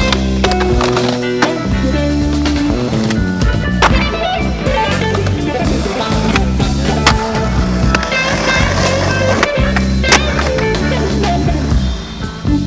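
Music playing under skateboard sounds: about six sharp cracks of the board popping and landing are spread through it.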